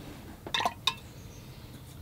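A few short clinks, about half a second to a second in, as a watercolor paintbrush knocks against a hard container between strokes.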